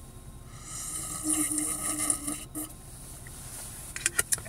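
A person slurping coffee straight from the mouth of a glass bottle: a gurgling suck that starts about half a second in, lasts about two seconds and stops abruptly, sounding more like a fart.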